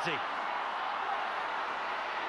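Steady hubbub of a stadium crowd, heard through a TV broadcast's sound.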